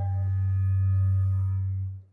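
A steady low hum from the hall's public-address system, one deep tone that swells slightly and then cuts off abruptly at the end.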